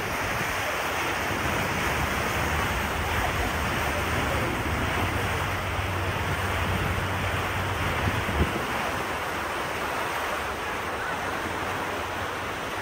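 Wind rushing over the microphone and water noise aboard a moving river cruise boat, with a steady low hum that cuts off about eight seconds in.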